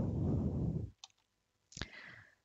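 A low rush of breath on a headset microphone for about the first second, then a single sharp click near the end: a mouse click advancing the presentation slide.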